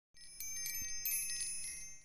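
Short intro logo sting of high, shimmering chime tones, struck a few times and ringing on, fading out near the end.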